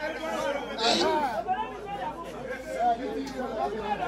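Many people talking over each other in a crowd, a continuous babble of overlapping voices with no single clear speaker.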